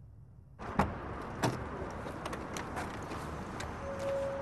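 Car door being opened and handled as a man gets out of the vehicle: two sharp latch clicks about a second in, then smaller knocks and rustling, over outdoor noise.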